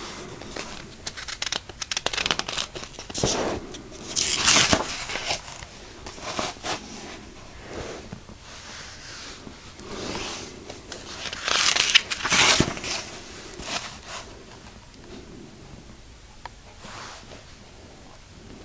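Textbook pages being handled and turned: papery rustling and scraping, with two louder page flips, about four seconds in and about twelve seconds in.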